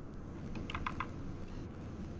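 Three or four quick clicks at a computer, bunched together about a second in, over a steady low room hum.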